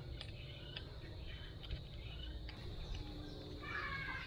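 Faint scattered clicks of a bicycle brake lever and its clamp being handled and worked loose on the handlebar, with a short animal call near the end.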